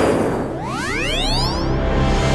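Intro sound effects over a music bed: a noisy hit that fades over the first half-second, then a rising pitched sweep of several tones climbing together for about a second, just before the title pops in.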